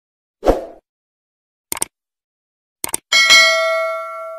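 Sound effects of a subscribe-button animation: a short thump, then two quick double clicks, then a bright bell-like ding that rings on and fades.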